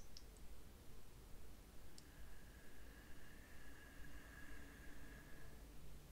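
Quiet room tone with a faint low hum, a small click at the start and another about two seconds in, followed by a faint thin steady tone that stops shortly before the end.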